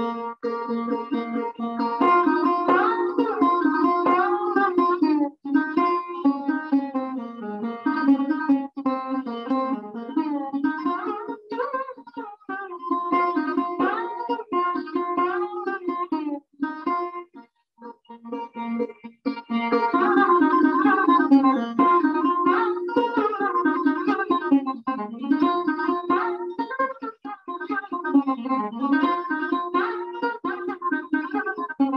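Solo sarod playing a short composition in an afternoon raga: plucked notes with frequent sliding glides between pitches. The playing stops for about a second a little past halfway, then resumes.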